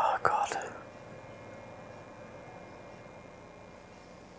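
A man's short breathy vocal sound, two quick whispered breaths in the first second, then quiet room tone.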